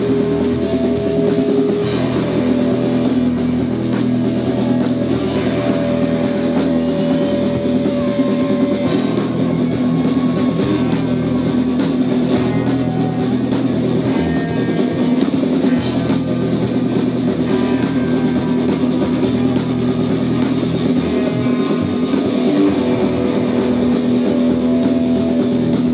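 Live rock band playing loud and steady: electric guitar, bass guitar and drum kit.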